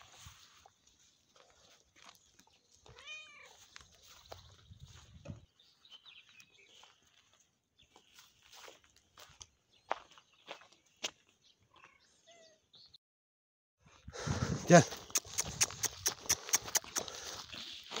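A cat gives a single meow about three seconds in, rising then falling in pitch, amid faint scattered clicks. Near the end comes a louder stretch of rustling with a quick run of sharp rattling ticks.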